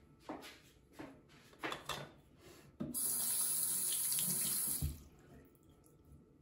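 Bathroom sink tap turned on and left running for about two seconds, then shut off. A few light knocks of small items being handled come before it.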